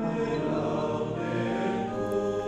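A choir of Franciscan friars, men's voices, singing a slow hymn together in long held notes.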